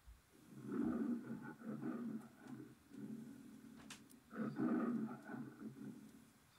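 The MGM logo lion roaring twice, with shorter growls between the roars. It is played back from a VHS tape and heard through a television's speaker.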